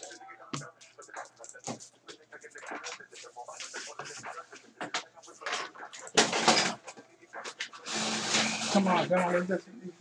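Indistinct speech, the words not made out, faint and broken at first and much louder in the last few seconds.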